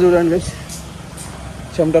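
A man's voice speaking, with a steady low background rumble in the pause between his words.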